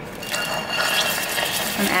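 Canned black beans and their liquid pouring from the can into a stainless steel pot of hot olive oil, sizzling as they land. The hiss starts about a quarter-second in and runs steadily.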